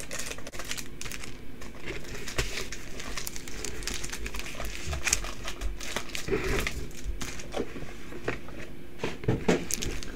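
Foil trading-card booster packs crinkling and crackling irregularly as they are lifted out of their box and handled.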